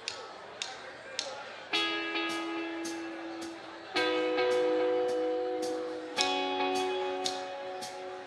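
Live rock band playing a song's opening bars: a steady hi-hat tick nearly twice a second, joined about two seconds in by held guitar and synth chords that change every couple of seconds.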